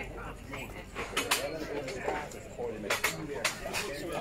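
People talking, with several sharp clinks and knocks, about six, scattered through the middle and end.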